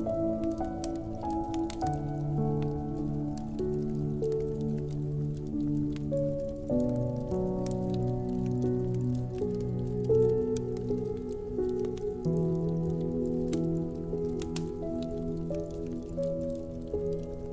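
Slow, soft piano music with held chords that change every few seconds, over a crackling wood fire whose small sharp pops come thick and irregular throughout.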